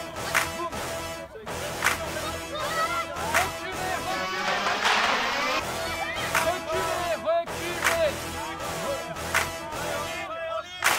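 Young children's high voices shouting and calling across a rugby pitch, mixed with spectators' voices, broken by sharp clicks or knocks about once a second.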